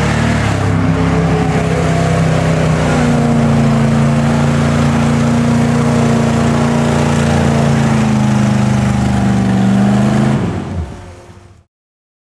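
Jeep engine revved up and held at high revs as it churns in a deep mud hole, its pitch wavering a little. Near the end the revs drop and the sound cuts off suddenly.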